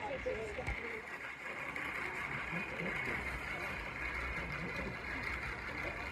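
Indistinct voices of people talking nearby, no words clear, over a steady hiss and a low steady rumble.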